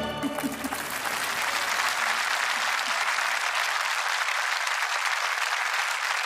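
Concert audience applauding at the end of the song. The applause builds through the first second as the last orchestral sound dies away, then holds at a steady level.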